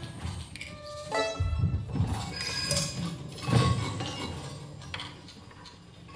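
Free-improvised music for violin and percussion: held violin notes over scattered clinks and knocks, with a low rumble from about a second and a half in.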